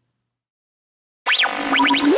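Silence, then about a second and a quarter in, an electronic logo jingle starts suddenly: quick falling and rising synth pitch sweeps over a held low tone.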